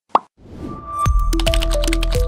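A single short pop sound effect, then closing ident music swells in and is playing fully from about a second in, with a steady low bass under a melody of short held notes.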